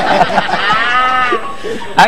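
A cow's moo, likely a sound effect, rising and then falling in pitch for about a second, after a brief stretch of talk.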